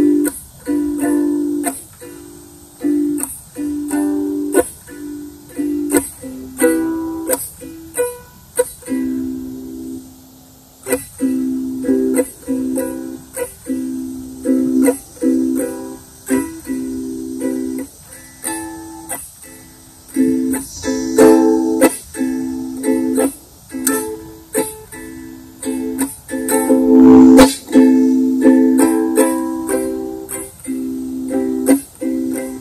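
Ukulele strummed by hand in repeated chords, each strum starting with a sharp attack, with a brief lull about ten seconds in.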